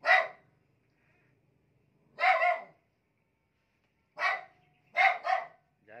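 A dog barking in short bursts: one bark at the start, a couple about two seconds in, then several more close together in the last two seconds.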